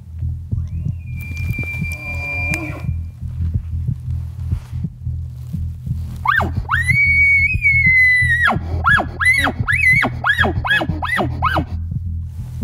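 A man-made elk bugle blown through a bugle tube: a high, rising scream held for about two seconds, then a run of about eight quick chuckles. Under it runs background music with a low pulsing beat. A fainter high whistle is heard a second or so in.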